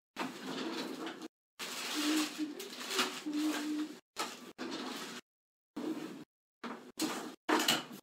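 Rummaging and handling noises, with things being moved about and knocked against each other as someone searches for a ruler, along with a faint indistinct voice; the sound cuts in and out in short stretches with dead silence between.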